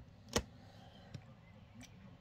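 Quiet room tone broken by one sharp click about a third of a second in and a fainter tick a little past the middle.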